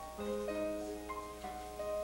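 Live accompaniment band playing the instrumental introduction of a show tune, held chords that change about every half second to a second.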